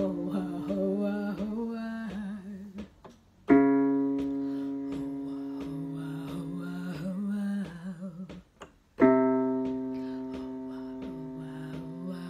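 Keyboard chords struck twice, about five and a half seconds apart, each held and slowly fading while a woman sings a short warm-up phrase over it. This is a vocal exercise being stepped down the keyboard for lower voices.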